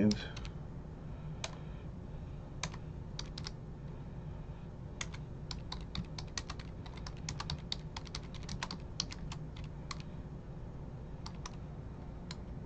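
Typing on a computer keyboard: irregular key clicks in short quick runs, busiest in the middle and latter part, over a low steady hum.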